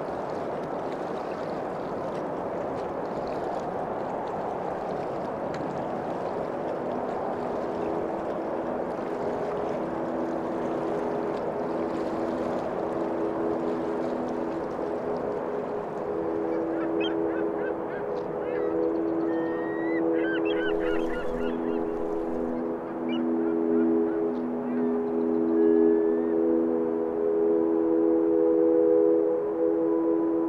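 Ambient soundscape: a steady rush like Arctic wind, joined after several seconds by a low drone of held tones that swells toward the end. In the middle, a brief flurry of bird calls sounds over it.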